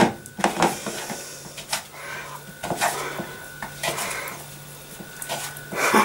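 Fingers rubbing margarine and flour into crumbs in a plastic mixing bowl, with irregular knocks and clicks of hands against the bowl over a soft rustle of the crumbly mixture.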